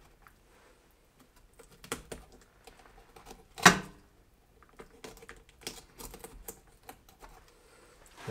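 Fillet knife cutting and scraping along a halibut's back bones, giving a scattered run of light clicks and taps, with one louder knock a little before halfway through.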